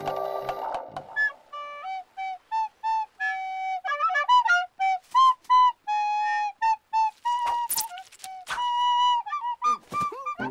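A small wooden flute playing a simple tune of short and held notes, with a few sharp clicks about seven and a half seconds in.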